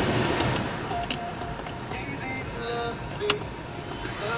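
BMW 3 Series' Business CD radio playing music through the car speakers, with a few sharp clicks as its buttons are pressed.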